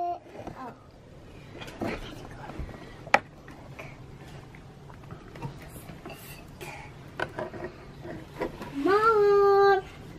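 A young child's voice holding one long sung note near the end, sliding up into it, with faint small handling sounds and a single sharp click about three seconds in.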